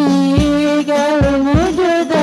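Women's voices singing an Islamic sholawat through microphones, holding long, wavering melodic notes, over the steady low beat of hadrah frame drums (rebana).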